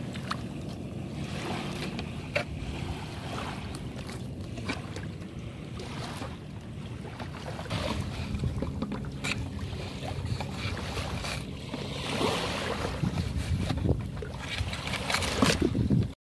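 Steady wind and surf noise, with a few short sharp clicks of a filleting knife against a plastic cutting board as whiting are filleted.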